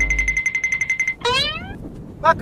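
Comedy sound effects as background music fades out: a fast, high, pulsing electronic beep trill of about ten pulses a second stops just past a second in. A short rising whistle-like glide follows.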